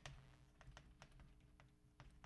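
Chalk on a blackboard while writing: a quick, irregular run of faint sharp clicks and taps as the strokes go down.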